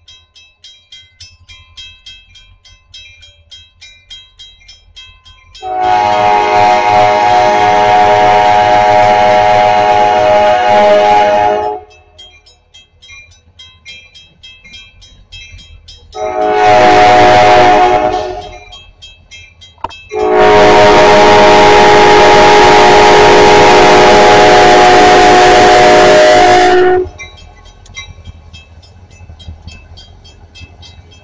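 Diesel freight locomotive's air horn sounding a long blast, a short blast and a long blast, the close of the grade-crossing signal, as the train approaches. Each blast is a steady multi-note chord. A low locomotive rumble runs under it.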